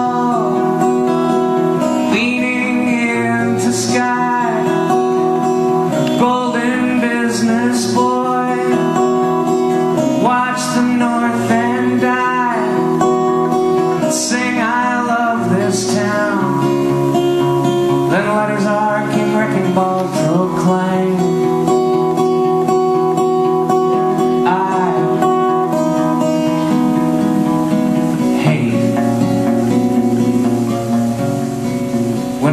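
Solo steel-string acoustic guitar played steadily in a live song, with a man singing over it in short phrases.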